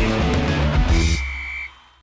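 Rock-style TV sports-show theme music with guitar. It ends on a final hit about a second in, a high note held briefly after it, and fades out near the end.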